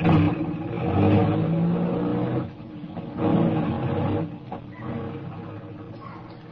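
Radio-drama sound effect of a car engine revving as the car pulls away. It follows a short knock at the very start, swells twice, and then fades.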